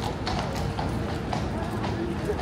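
A shod horse's hooves clip-clopping on stone in a few spaced strikes as the horse shifts about restlessly.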